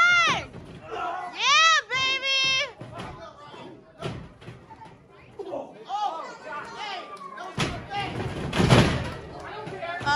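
High-pitched shouts from wrestling spectators, then about eight seconds in a heavy thud as a wrestler is taken down onto the ring canvas.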